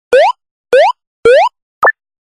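Cartoon sound effect: three quick rising 'boop' tones about half a second apart, then a short higher blip near the end.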